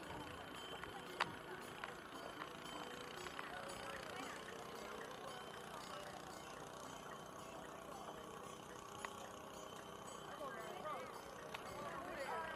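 Faint, indistinct voices of other people on the footbridge, louder near the start and again near the end, over a low steady hiss, with a few isolated sharp clicks.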